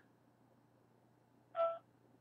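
A single short electronic beep from a mobile phone, like a keypad tone, about one and a half seconds in, over quiet room tone with a faint steady hum.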